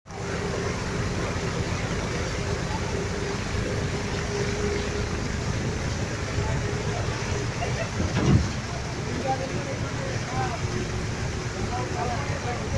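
Steady rain noise with a vehicle engine running beneath it as a low, steady rumble and hum. There is a brief thump about eight seconds in.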